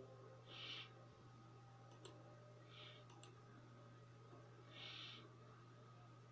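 Near silence with a steady low hum and a few faint computer mouse clicks, in two quick pairs about a second apart, as a dropdown list is opened. Three soft puffs of hiss come between them.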